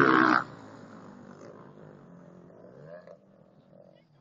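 Motocross motorcycle engine running loud at high revs close by, dropping away sharply about half a second in. Fainter engines of bikes further off follow, rising and falling in pitch, and fade out a little after three seconds.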